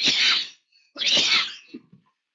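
A person's voice making two loud, breathy bursts about a second apart, without words.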